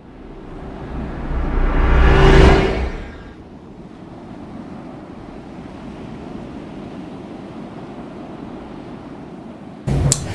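Logo intro sound effect: a whoosh that swells to a loud peak about two and a half seconds in, then settles into a steady, quieter drone that cuts off just before the end.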